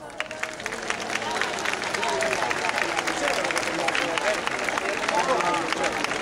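Large audience applauding and cheering, with dense clapping and overlapping shouts and whoops, building up over the first second as the music stops.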